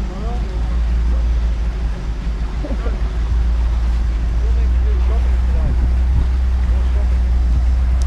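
Wind rumbling on the microphone of a boat under way, growing a little louder about halfway through, with faint voices now and then.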